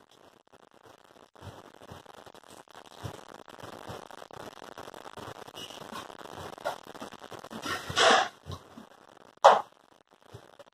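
Faint rustling from hands handling cotton and cloth at close range, with two short, louder noises near the end.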